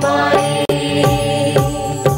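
Indian devotional music: a long held sung note over sustained accompaniment, with a steady beat of percussion strokes.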